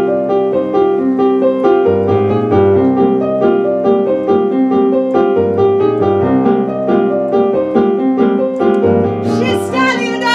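Digital stage piano played four-hands: a repeating pattern of chords and notes over a low bass note that returns every few seconds. Near the end a high voice comes in with a gliding sung line.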